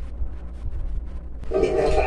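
Television audio picked up in the room: a low hum, then music with a held, multi-note chord that comes in loudly about one and a half seconds in.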